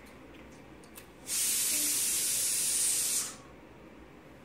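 A steady hiss lasting about two seconds, starting and stopping abruptly.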